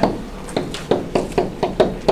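A pen stylus tapping and clicking against a tablet or pen-display surface while handwriting words: a quick run of about seven light ticks, three to four a second.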